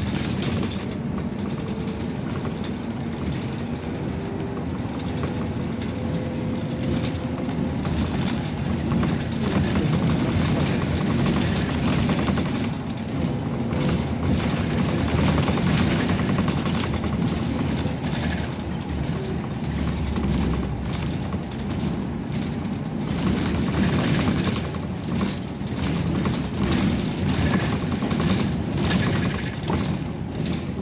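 Inside a moving city bus: the engine runs, the tyres and road make noise, and the body and fittings rattle quickly and constantly.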